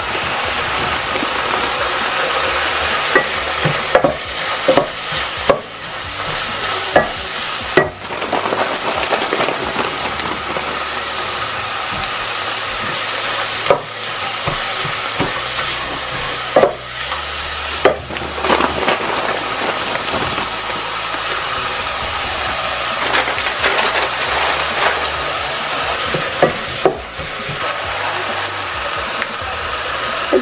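Chicken and shredded vegetables sizzling steadily in hot oil in a pot as they are stirred with a wooden spoon. Sharp clacks, likely the spoon against the pot, come every few seconds.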